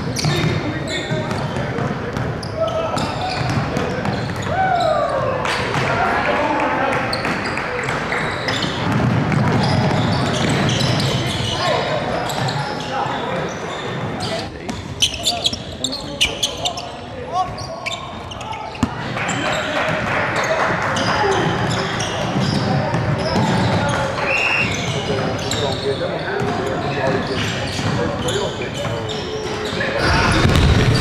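Live gym sound from a basketball game: a basketball bouncing on a hardwood court among players' and spectators' voices echoing in a large hall, with a short run of sharp knocks about halfway through.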